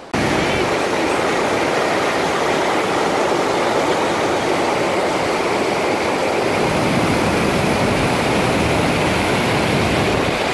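Whitewater rapids rushing over boulders in a mountain creek, heard close up as a loud, steady rush of water.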